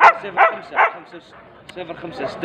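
Siberian husky barking three times in quick succession; the first bark is the loudest.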